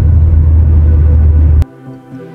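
Loud, steady low rumble of a car's cabin while driving, which cuts off abruptly about a second and a half in. Quiet background music with held tones follows.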